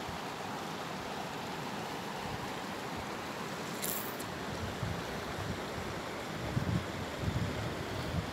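Steady hiss of flowing river water, with a brief high hiss about four seconds in and low wind rumbles on the microphone near the end.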